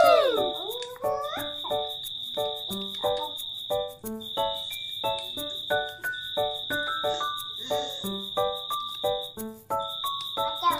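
Light background music with short pitched notes about twice a second over regular ticking, under a continuous high, thin trilling tone that breaks off every second or two.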